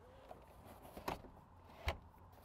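Van steering column being adjusted: two faint knocks about a second apart, the second louder with a low thump, as the steering wheel is pushed in and raised.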